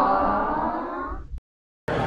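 Short edited-in sound clip of held, stacked tones that glide slowly downward, cutting off suddenly after about a second and a half.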